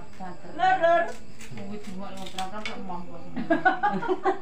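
Casual talk among several people in a small room, with a few faint clicks in a gap between phrases.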